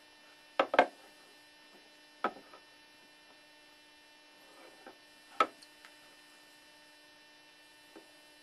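A steady electrical hum, broken by a few short sharp knocks and clacks as a Pyrex pitcher is handled down in a water-filled container: two close together about a second in, another about two seconds in, and one more past the midpoint.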